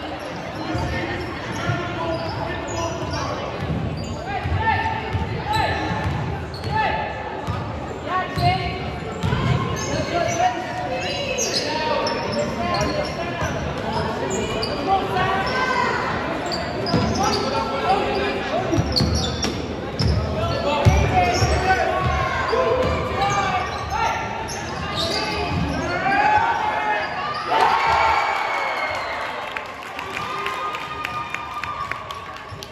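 A basketball being dribbled on a hardwood gym floor during a game, with players' voices calling out throughout.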